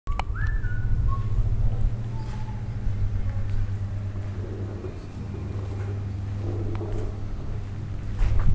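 A steady low mechanical hum running throughout, with a few short whistle-like tones in the first couple of seconds, the first rising in pitch.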